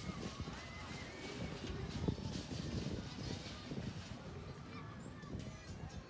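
Outdoor funfair ambience: a constant din with distant voices, and a wavering high-pitched sound in roughly the first second and a half.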